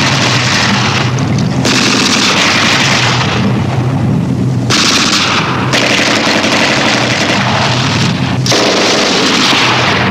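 Battle sound effects: continuous gunfire with machine-gun fire and booms of explosions, loud and unbroken, its mix shifting abruptly every second or two.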